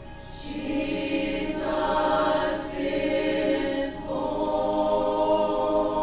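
Mixed choir of men's and women's voices singing a hymn in sustained, held chords, starting softly and swelling to full voice within the first second.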